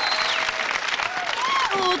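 Cartoon sound effect: a dense crackling hiss with thin, high whistling tones gliding up and down over it.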